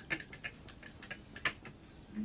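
A quick, uneven run of light clicks and taps, about a dozen in two seconds, with one sharper click about one and a half seconds in.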